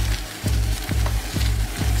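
Gravel bike tyres hissing and crunching over a wet dirt road, under background music with a deep bass beat about twice a second.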